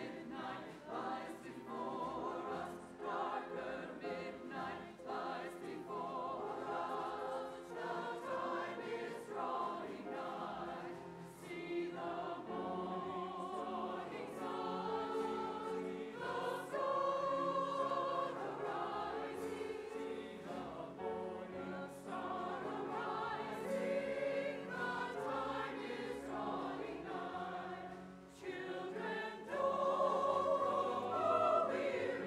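Mixed church choir singing with string ensemble accompaniment of violins, cello and double bass. The sound dips briefly near the end, then swells louder again.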